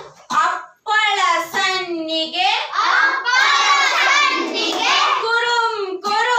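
Young children singing a rhyme in a small room, with long, gliding sung notes after a brief pause at the start.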